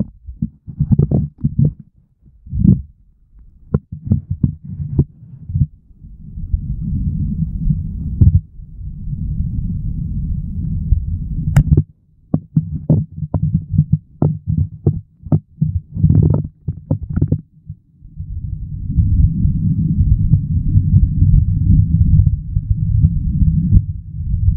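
Stream water heard through the Fujifilm FinePix XP140's microphone while the camera is submerged: a muffled low rumble, broken by many sharp knocks and clicks of the camera body being handled and bumping about. About three quarters of the way in the knocks die away and the rumble becomes steady.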